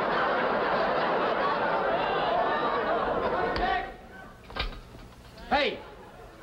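Studio audience laughing, a dense crowd sound that dies away just before four seconds in; two short vocal exclamations follow near the end.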